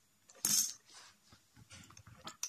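Plastic Rummikub letter tiles clicking and clattering on a wooden tabletop as they are moved by hand. One louder clatter comes about half a second in, followed by a few lighter clicks.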